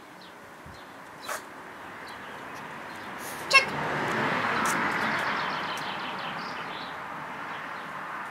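A vehicle passing by, its noise swelling to a peak about halfway through and then fading away. There is a loud sharp snap just before the peak, a softer click earlier, and faint bird chirps.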